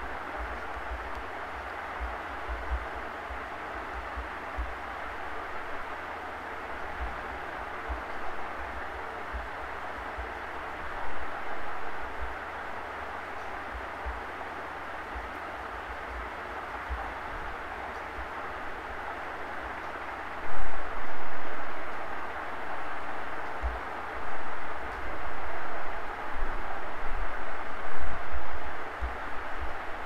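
Steady background hiss and low rumble with no speech, rising in uneven swells over the last ten seconds.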